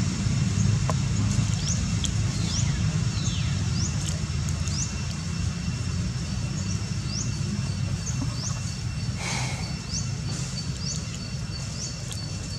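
Outdoor ambience: a steady low rumble with short, high, rising bird chirps repeated about once a second, over a faint steady high insect tone.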